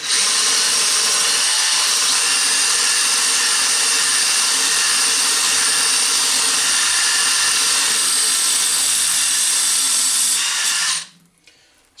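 DeWalt cordless drill running steadily with a 5 mm glass drill bit, drilling into a wet glass bottle. It stops suddenly about eleven seconds in.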